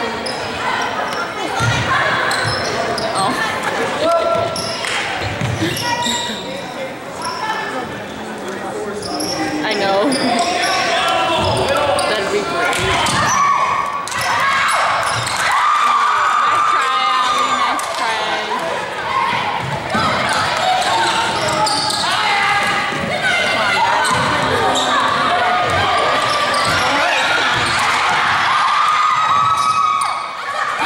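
Basketball game in a gym: the ball bouncing on the hardwood court amid the knocks of play, with players and spectators calling out and chattering throughout, echoing in the hall.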